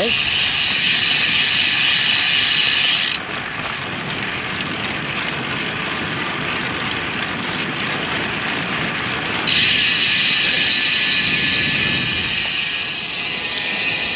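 Wind and road noise on a bike-mounted action camera's microphone during a road bike ride. A bright high hiss cuts out abruptly about three seconds in and returns just as abruptly near ten seconds, as the footage switches between camera mounts.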